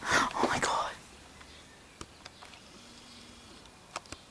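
A breathy, whispered voice for about the first second, then a quiet room with a few faint clicks.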